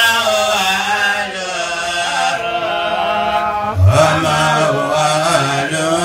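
A man's voice chanting in long, wavering held notes, in the manner of an Islamic devotional chant, dropping to a lower held pitch about four seconds in.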